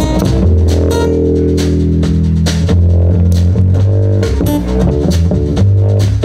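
Live blues trio playing an instrumental passage: amplified acoustic guitar, upright double bass and drum kit, with no singing. A chord rings out near the start before the steady beat picks up again.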